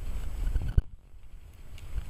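Wind rumbling on the camera microphone, dropping away just under a second in, with a single sharp knock as it does.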